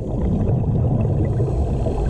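Underwater rumble and gurgle of a scuba diver's exhaled bubbles venting from the regulator, a dense low noise with no steady tone.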